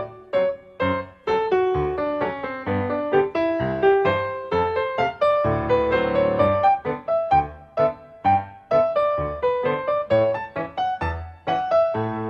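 Background piano music: a solo piano playing a busy melody of quick notes with chords beneath.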